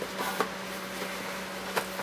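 Faint handling of paper cards and cardboard packaging: a few soft clicks, about half a second in and again near the end, over a steady low room hum.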